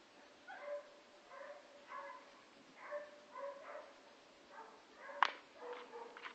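An animal giving a series of short, whining, dog-like calls, about one or two a second. A single sharp crack comes about five seconds in.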